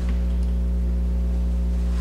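Steady low electrical hum with a stack of overtones, unchanging through the pause in talk.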